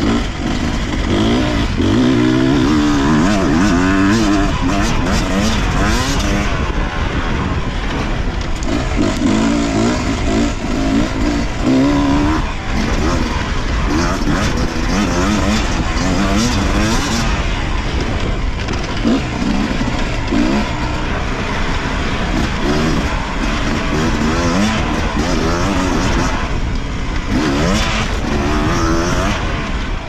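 Beta RR 250 Racing two-stroke single-cylinder engine, fitted with an S3 high-compression head, revving hard and easing off again and again under load while ridden, its note rising and falling through the gears.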